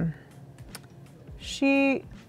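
A few light taps and clicks on a laptop keyboard, scattered over about a second and a half, then a drawn-out spoken word near the end.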